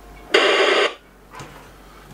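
B&G V50 VHF marine radio giving a short burst of static hiss, about half a second long, as its squelch (sensitivity) is opened, followed by a fainter brief sound about a second later.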